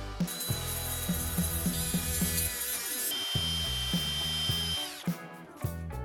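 A power tool runs for about four and a half seconds, a steady high whine that drops slightly in pitch as it stops. Background music with a steady beat plays throughout.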